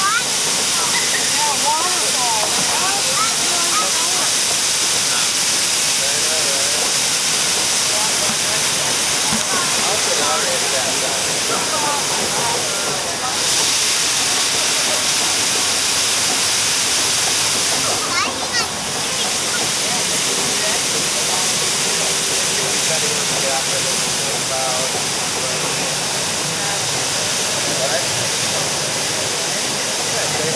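Steady rushing and spraying of water around a river-rapids ride raft, with a strong hiss, dipping briefly twice. Riders' voices chatter faintly underneath.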